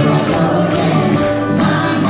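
Live band and several singers performing a song on stage, heard from the audience seats.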